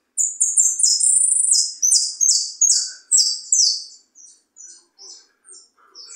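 Jilguero (saffron finch) singing: a loud, fast run of high, repeated notes lasting about three and a half seconds, then softer, spaced chirps.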